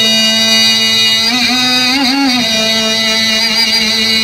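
A man's voice holding one long sung note, with a brief wavering turn in pitch partway through.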